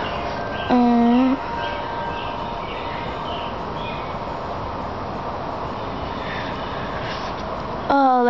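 A steady hissing noise throughout, with one short hummed note in a woman's voice about a second in.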